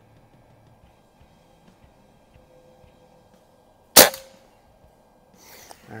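A single sharp shot from a Beeman QB Chief precharged pneumatic air rifle, about four seconds in. The rifle has its velocity turned up to a little over 700 feet per second.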